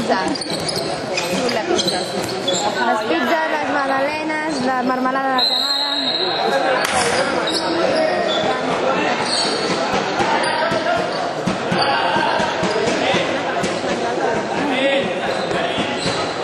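Ball play on a hard court: a ball bouncing and being struck on the floor amid players' running, with voices calling out through most of it.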